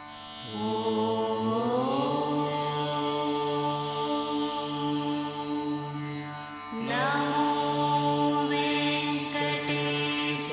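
Devotional Carnatic-style music: long held melodic notes over a steady drone. Two phrases, one starting about half a second in and the other about seven seconds in, each opening with a rising slide in pitch.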